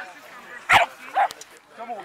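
A dog barking twice, one loud short bark and a smaller one about half a second later, during play between a Boston terrier puppy and a malamute.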